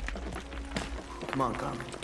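Film soundtrack: a low rumble with scattered knocks, and a short wavering cry about a second and a half in.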